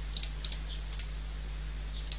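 Computer keyboard keys and mouse buttons clicking a few times, mostly in the first second, over a low steady electrical hum.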